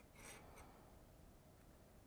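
Near silence, with one faint, brief rustle near the start from knitting needles and yarn being worked through a bind-off.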